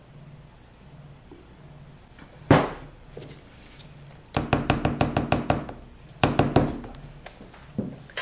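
Plastic pitcher and spatula knocking against each other while soap batter is poured into a mold: one sharp thunk, then two short runs of quick clicks about a second and a half apart.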